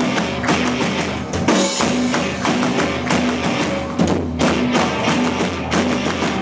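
Live rock band playing a football supporters' chant: electric guitars, bass and drums driving a steady beat, with the audience clapping along.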